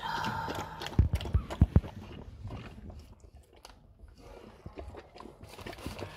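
Mother dog, a golden retriever, licking and chewing at her newborn puppy's birth sac and umbilical cord as she works to free the pup after whelping, in scattered clicks, with a few dull thumps about a second in.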